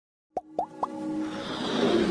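Animated logo intro sound effects: three quick pops, each gliding up in pitch, about a quarter second apart, then a whooshing swell with music that grows steadily louder.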